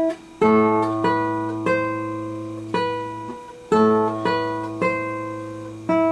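Classical nylon-string guitar playing a slow phrase of single plucked melody notes, about one a second, over a low bass note that keeps ringing underneath.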